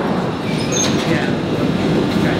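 Jubilee line tube train at an underground station platform: a steady, dense rumble of train noise.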